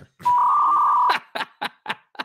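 An electronic telephone tone sounds for just under a second, as a steady beep. It is followed by a few short ticks.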